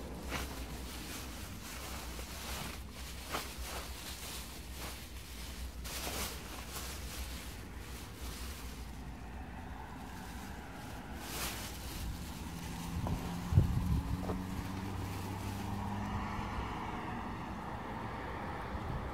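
Plastic trash bags rustling and crinkling as they are handled in a dumpster, over a steady low hum. A couple of sharp knocks come about thirteen seconds in, and a droning tone grows louder near the end.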